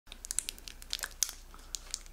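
Mayonnaise squeezed from a soft plastic squeeze bottle: an irregular run of small crackles and sputters as it comes out.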